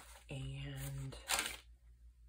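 A paper page of a handmade junk journal turned over by hand, giving a short rustle just past the middle. Before it comes a brief, steady hummed "mm" in a woman's voice.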